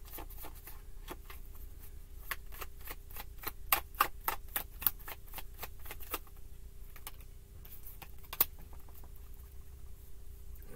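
A tarot deck being shuffled by hand: a quick run of light card clicks and flicks, thickest over the first six seconds and thinning out after, with one sharper snap about eight seconds in.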